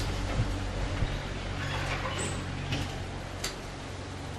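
Marker writing on a whiteboard: a few faint short strokes and taps over a steady low room hum.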